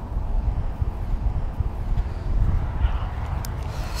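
Wind buffeting an outdoor action-camera microphone: an uneven low rumble that flutters throughout.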